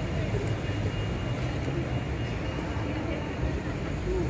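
Street ambience: a steady low rumble with people talking.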